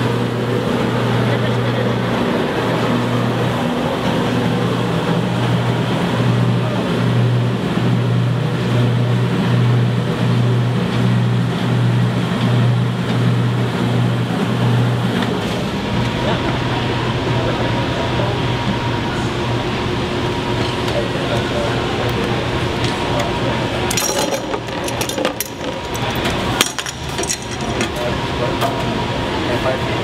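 Grape crusher-destemmer and its must pump running, a loud steady machine hum with a low throb, pushing crushed grapes and juice through the hose. The machine's note changes a little past halfway, and a run of clattering knocks comes near the end.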